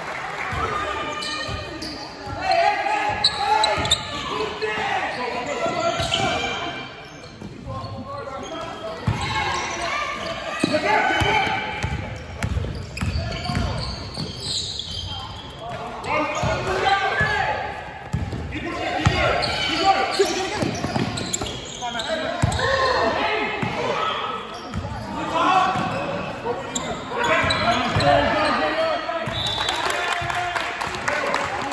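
A basketball bouncing on a wooden sports-hall floor during live play, with the thuds echoing around the hall. Players and people on the sideline call out over the play throughout.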